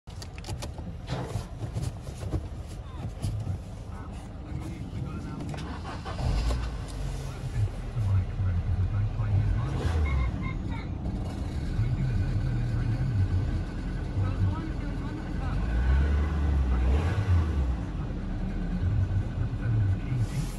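Volvo S40's 1.6-litre petrol four-cylinder engine idling, heard from inside the cabin as a steady low rumble that gets louder about six seconds in.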